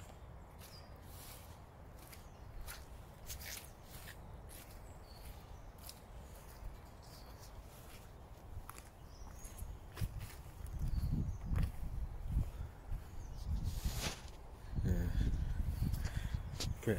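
Footsteps on a muddy woodland path covered in leaf litter and twigs. Scattered light clicks and cracks come first, then heavier, duller thuds from about ten seconds in.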